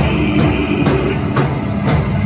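Live heavy band playing: distorted guitar and bass over a drum kit, with a cymbal crash about twice a second.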